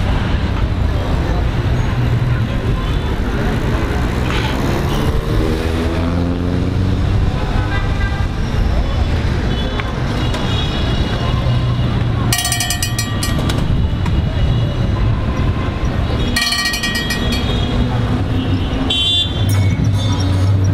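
A low-floor electric tram running slowly past on street track, with a steady hum and a rising whine as it moves off. Two short horn toots are heard near the middle, over street traffic and voices.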